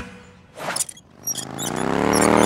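Cartoon soundtrack: the upbeat dance music cuts off abruptly, and after a short swish a wavering tone swells in, with faint high twinkles above it.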